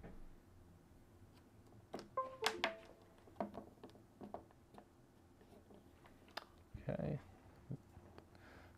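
Keypad buttons on a handheld radio being pressed, with sharp clicks and, about two seconds in, a quick run of short beeps at different pitches. A few more single clicks follow.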